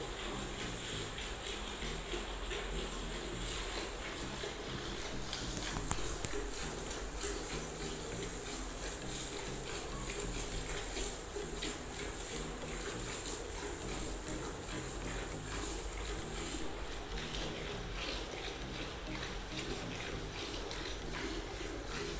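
A cow being milked by hand, milk squirting into a steel pail in a steady, even rhythm of alternating strokes, with a few sharp knocks in the first few seconds.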